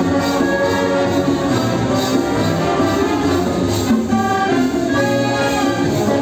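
Symphonic band playing an instrumental passage of a bolero arrangement: clarinets and brass holding chords and melody lines over a light, steady percussion beat.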